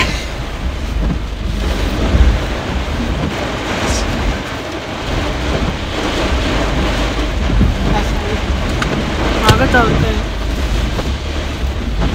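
Heavy rain beating on a car's roof and windscreen, heard from inside the cabin, with wind and a steady deep rumble underneath.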